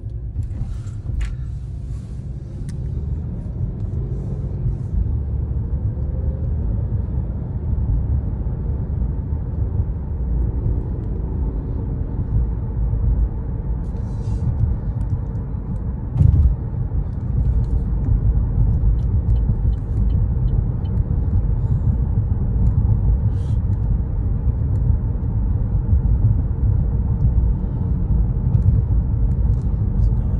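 Car cabin road and engine noise while driving: a steady low rumble that slowly grows louder, with a brief louder bump about halfway through.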